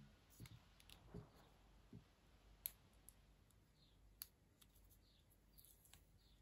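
Faint, scattered clicks and light taps of paper stickers and photo cutouts being handled, peeled and pressed onto a binder page.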